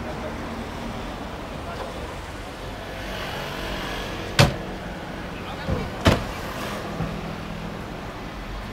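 Radical RXC Turbo 500's 3.5-litre twin-turbo Ford EcoBoost V6 idling steadily while parked. Two sharp knocks, the loudest sounds, come about four and a half and six seconds in.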